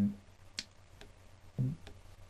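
A few faint, sharp clicks from a computer mouse as the web page is scrolled, with a brief low sound of the man's voice about one and a half seconds in.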